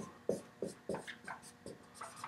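Dry-erase marker writing on a whiteboard: about half a dozen short, separate strokes as the Roman numeral II and the start of a word are written.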